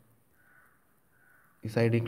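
A pause in a man's voice-over, almost silent apart from two faint soft noises, then his voice starts speaking near the end.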